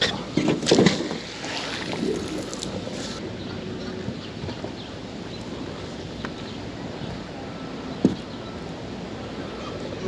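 Steady outdoor wash of river water and wind around a small boat, with a few knocks and handling noises in the first second and a single sharp knock about eight seconds in.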